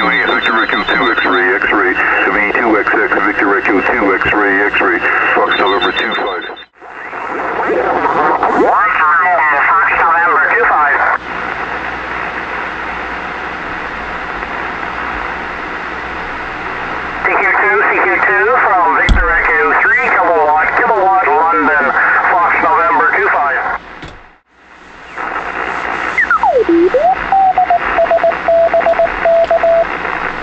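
Single-sideband receiver audio from an Elecraft K3 transceiver being tuned across the 2-metre band: steady band hiss with garbled, off-tune sideband voices. Near the end a whistle sweeps down, then settles into a steady tone as a carrier is tuned in.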